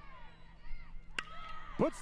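A single sharp crack of a bat hitting a pitched baseball, about a second in, over faint stadium background.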